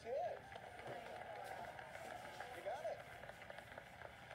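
Muffled game-show audio, voices over a busy background, playing through a phone's small speaker and picked up from the room.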